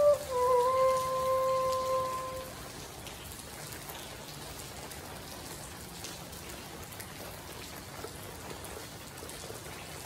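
Homemade PVC transverse flute holding a clear note, stepping down to a slightly lower note just after the start and stopping about two and a half seconds in. After it, steady rain pattering on the tent roof.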